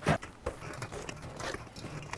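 Aluminium beer cans being pulled from a cardboard case and set into a cooler: a sharp knock just after the start, a smaller one about half a second in, then light clicking and rustling.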